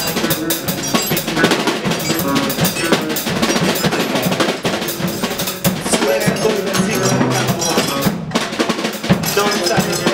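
Drum kit played busily throughout, a dense run of snare and cymbal hits, with a man's voice speaking short words into a microphone over it.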